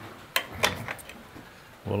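Metal latches and the wooden door of a quail hutch being unfastened by hand: a quick series of sharp clicks and knocks over the first second or so.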